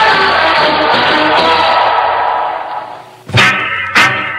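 Music: the end of a sung song fades out, and a little over three seconds in a new upbeat track cuts in with strong, evenly repeating hits.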